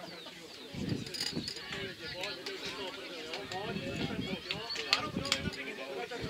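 Indistinct voices of players and spectators calling and talking across a football pitch, too distant to make out, with a few sharp clicks.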